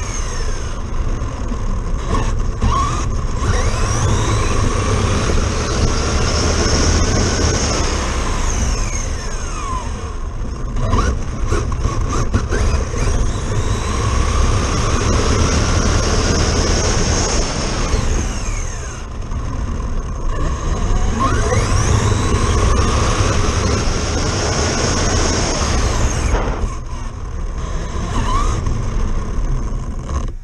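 Traxxas Slash RC truck's electric motor and drivetrain whining up and down through repeated bursts of acceleration and slowing, heard from a camera on the truck itself, over constant rumble and rushing noise from the road. Near the end it cuts off suddenly as the truck stops.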